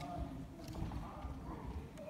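Footsteps on a sports-hall floor as a handler walks a rabbit over an agility course, with a faint murmur of voices in the hall.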